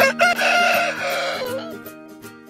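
Broiler rooster crowing once, a loud, rough crow lasting about a second and a half, over background music.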